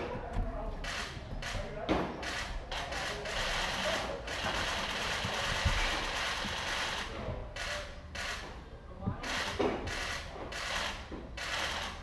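Indistinct background voices with many scattered short clicks and knocks throughout.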